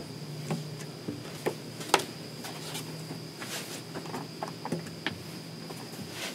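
Handling noise as an acoustic guitar is picked up and moved: scattered knocks, taps and rustles, with one sharper knock about two seconds in, over a steady high-pitched whine.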